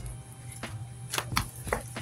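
A few light clicks and taps as hands handle tarot cards on the table, over a steady low room hum.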